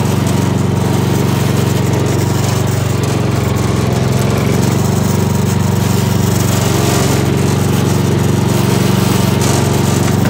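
Gravely garden tractor engine running steadily at working speed while the tractor pushes snow with its front plow blade.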